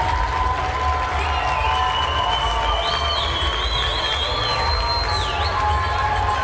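Audience cheering and shouting over a steady bass beat of background music, with shrill whistles from the crowd starting about a second in.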